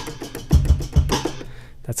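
A drum break, sliced at its transients and triggered from an EXS24 sampler, played back at a changed tempo: a few kick and snare hits in the first half, fading out near the end.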